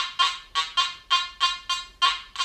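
Makro Gold Kruzer metal detector giving a fast run of sharp, high-pitched beeps, about four a second, each fading quickly, as a tiny piece of gold chain is swept back and forth past its search coil. Each beep is the detector picking up the small gold target.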